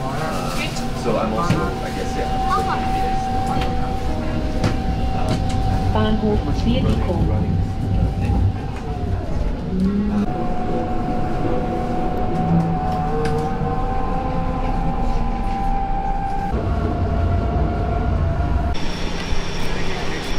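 Ride inside an electric city tram: a low running rumble with a steady high motor tone that breaks off for a moment about halfway through and comes back, with people talking in the car. Near the end the sound changes to an open street.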